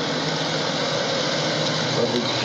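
A car engine idling: a steady, even rushing noise with a low hum underneath.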